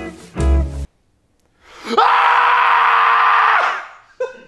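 Music with plucked notes over a low bass breaks off under a second in; after a short silence a loud, steady scream is held for about two seconds and fades out near the end.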